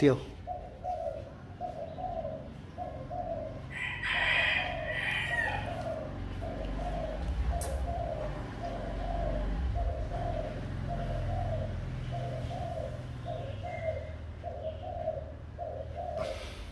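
A dove cooing over and over, a long run of short low coos, two to three a second.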